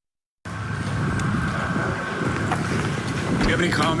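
Wind rumbling on a handheld camera's microphone, with a thin steady high tone under it, starting after a brief silence at the very beginning. A man's voice starts near the end.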